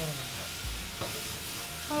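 Food sizzling in a hot kadai (Indian wok) as a metal ladle stirs it: a steady frying hiss with a few light clicks of the ladle against the pan.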